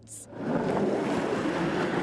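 Snowplow blade pushing snow along the road: a steady rushing noise that comes up about half a second in.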